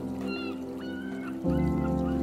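Seagulls crying in short, repeated calls over slow, calm music of sustained chords, with the chord changing about one and a half seconds in.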